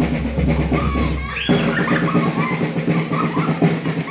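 Loud drum-led music with a heavy bass. The deep bass drops out about a second and a half in while the drumming carries on, and short high calls sound over it.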